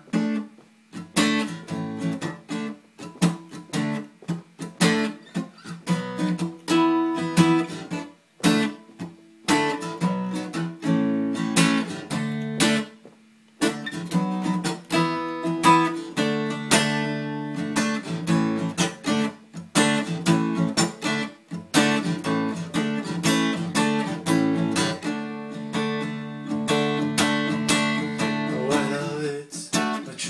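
Solo acoustic guitar strummed and picked, its chords ringing out in an instrumental passage, with a couple of brief gaps.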